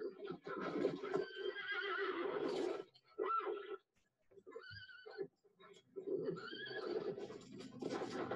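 Horses whinnying on a film soundtrack: several neighs in quick succession, each a wavering, shaking cry, with short gaps between them.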